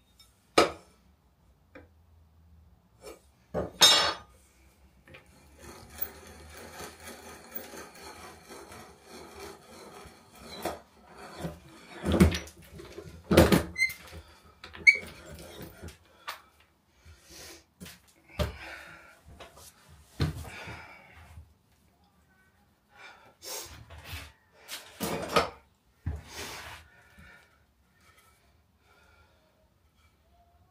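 Hand brace and bit boring through a block of beech: a rasping cut in the wood, broken by several sharp knocks as the block is handled on the bench.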